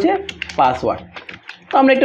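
Typing on a computer keyboard: a quick run of keystroke clicks as a short word is typed, broken about half a second in by a brief spoken sound.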